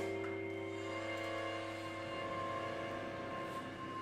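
Contemporary solo percussion music: several steady held tones overlap and slowly fade, and a higher ringing tone comes in about a second in.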